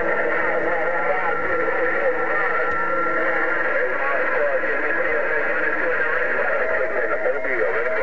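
Received audio from a President HR2510 radio tuned to 27.025 MHz: steady static and noise with faint, garbled voices of distant stations overlapping underneath.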